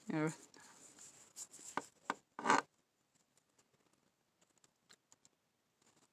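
Carving knife cutting basswood: four short scraping slices, the last and loudest about two and a half seconds in, then only faint ticks.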